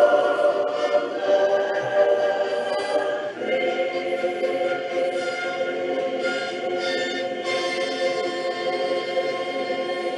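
A choir singing the closing chords of a film score, each chord long and held. The chord changes about three seconds in.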